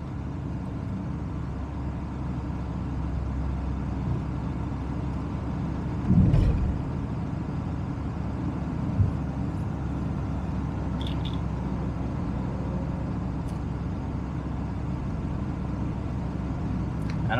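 A car driving steadily along a road: tyre, engine and wind noise picked up by a camera mounted on the outside of the car. A brief louder low thump about six seconds in.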